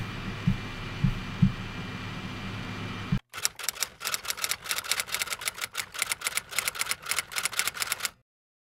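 Typewriter keystroke sound effect: rapid, irregular clicking of keys, starting about three seconds in and cutting off suddenly at the end. Before it there is a steady room hum with a few soft low thumps.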